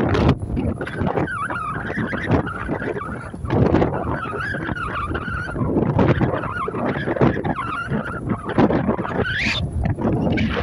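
Wind buffeting the microphone on the open deck of a moving passenger catamaran, over the rumble of the vessel under way. A wavering whistle-like tone runs through it and sweeps sharply upward near the end.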